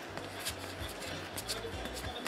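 Trading cards being flipped one by one off a stack held in the hand: a quick run of light clicks of card stock against card stock, a few every second.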